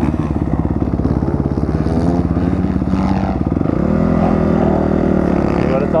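A dirt bike's single-cylinder engine pulses at low revs while riding, then picks up to a steadier, higher note about four seconds in.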